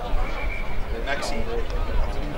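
Voices of players and spectators calling and shouting across an outdoor football ground.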